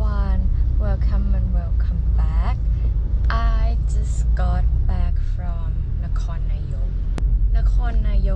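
A woman talking inside a moving car, over the steady low rumble of the car's engine and road noise in the cabin. A brief click about seven seconds in.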